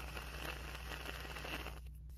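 Aerosol can of Dove styling mousse dispensing foam into a palm: a steady spraying hiss with a crackly sputter, cutting off suddenly near the end.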